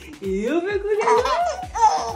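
Young baby laughing in a string of excited 'ah ah ah' squeals, climbing in pitch toward the end.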